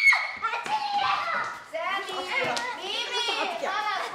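Several children's voices, high-pitched and overlapping, as the children play and shout to each other.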